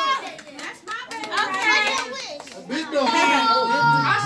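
Several children and adults talking and calling out over one another, with a few sharp hand claps in the first second.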